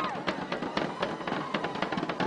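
Marching bass drums and a dhol beaten in a fast, uneven rhythm, about five or six strokes a second, with voices under it.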